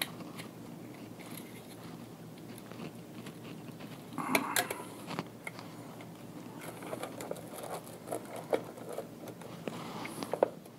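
Handling noise from an ATX power supply's sleeved wire bundle and plastic breakout board: wires rustling, with light plastic clicks and taps. A louder crinkling clatter comes about four seconds in, and more scattered clicks follow near the end.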